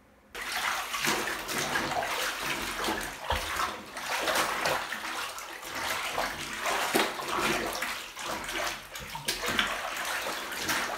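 Water sloshing and splashing in a partly filled bathtub as hands swish and knead dyed uniform fabric, rinsing the excess dye out in cold water. It starts suddenly about a third of a second in and goes on in irregular splashes.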